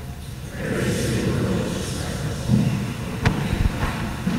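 Congregation answering the Gospel in unison, many voices blurred together in a large church, followed by a sharp knock a little past three seconds in and a few low thuds.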